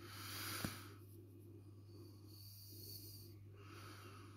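Faint breathing close to the microphone: one breath in the first second and another near the end, with a small click about half a second in, over a faint steady low hum.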